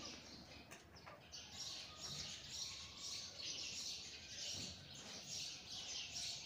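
Faint birds chirping, a steady run of short high chirps about two a second.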